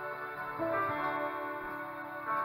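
Electronic keyboard with a piano sound playing held chords in a slow song introduction, with a new chord coming in about half a second in.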